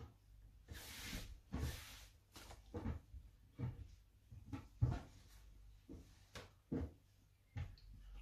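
Dress fabric rustling as it is lifted, shifted and spread out by hand on a tabletop, with a string of soft, brief knocks from hands and cloth against the table.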